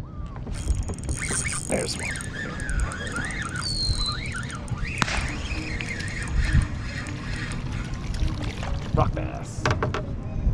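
A spinning reel being cranked fast to bring in a hooked small bass, with splashing as the fish comes up out of the water near the end. A high, wavering squeal runs through the first half.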